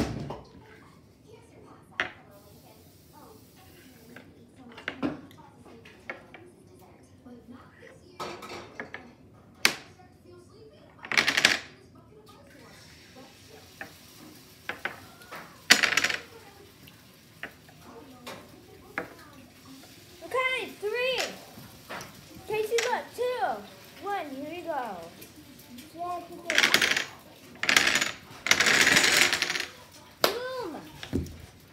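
Dominoes clicking one at a time as they are stood on a wooden tabletop, with sharp taps every few seconds. Near the end a longer clatter as the row of dominoes topples, with a wavering child's voice shortly before it.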